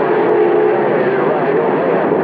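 CB radio receiver carrying a strong skip signal: a constant bed of static, with faint, garbled voices and a steady tone underneath.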